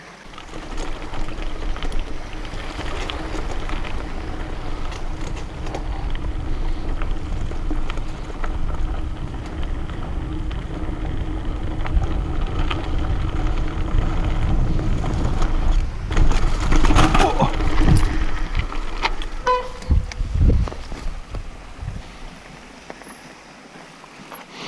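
Mountain bike ridden fast down a rough forest trail: tyres rolling over dirt and roots with the chain and frame rattling, the noise building steadily. About sixteen seconds in comes a loud burst of clattering impacts, then a couple of heavy thumps and a brief metallic ring, as the rear derailleur strikes the trail and is smashed. The bike then comes to a stop.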